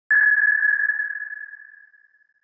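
A single high electronic ping that starts suddenly and fades away over about two seconds: a logo chime.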